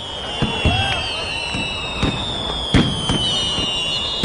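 Fireworks: several whistles gliding slowly down in pitch over scattered sharp pops and cracks.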